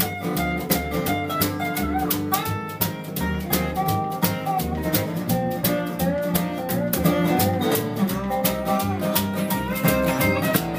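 Instrumental break of a rockabilly song played by a small acoustic band: strummed acoustic guitar, upright bass pulsing on the beat, a lap steel guitar playing a sliding lead line, and steady light percussion.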